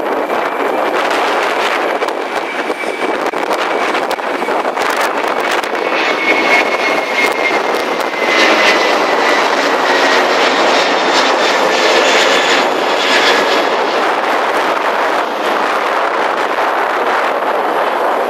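Twin-engine jet airliner passing low overhead: a loud, steady jet roar, with a high engine whine that slowly falls in pitch from about six to thirteen seconds in as the aircraft goes by.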